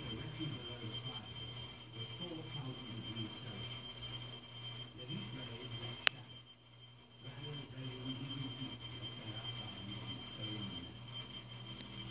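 Quiet room background: a steady low hum with a thin high whine and a faint, indistinct murmur, broken by one sharp click about halfway through.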